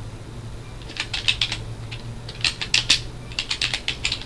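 Computer keyboard keys being typed in three quick bursts of clicks, over a low steady hum.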